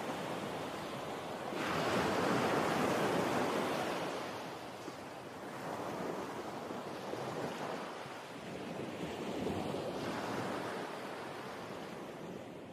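Ocean surf breaking and washing up a sandy beach, swelling and easing in three slow surges and fading out near the end.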